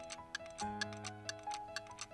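Clock ticking sound effect, about four ticks a second, over soft background music of held chords that change about half a second in.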